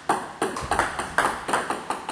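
A table tennis serve: the paddle strikes the plastic ball, then a quick run of sharp clicks as the ball bounces, double-bouncing on the far side of the table. The serve is a forehand pendulum backspin-sidespin serve.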